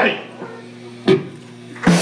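A live metal band's song cuts off with a short ringing tail, leaving a steady low hum from the stage. There is a single sharp hit about a second in, and a voice comes in loudly over the speakers near the end.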